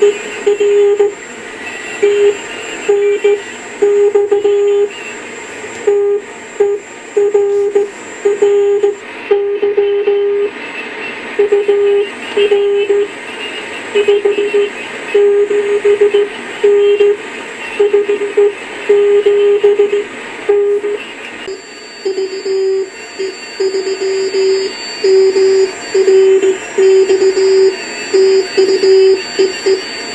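Morse code (CW) signal heard through a vintage National NC-173 tube receiver: a single steady beat tone keyed on and off in dits and dahs over constant band hiss.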